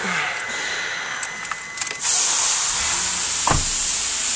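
Inside a car cabin, a faint steady tone stops about halfway through as a steady rushing hiss starts suddenly. A single dull thump comes near the end.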